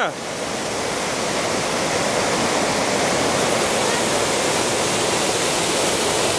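Steady rushing of a partly ice-covered waterfall, open water still pouring down through the ice into a pool below.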